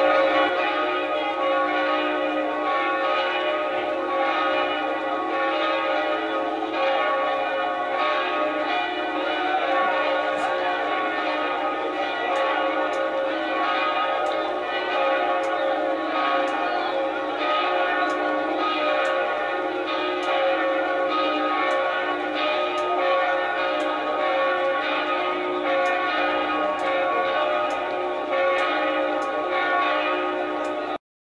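Church bells pealing: several bells rung together in a continuous, overlapping peal, with regular strokes and a long ring between them.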